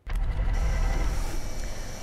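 Steady outdoor background noise on an open field microphone: a low rumble with hiss, cutting in suddenly at the start.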